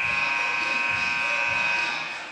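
Basketball scoreboard buzzer sounding one loud, steady buzz for about two seconds as the game clock hits zero, marking the end of the period.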